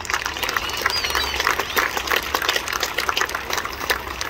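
Audience applauding: many hands clapping irregularly and steadily all the way through.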